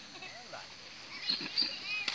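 Indistinct voices of people calling out, quiet at first and louder in the second half.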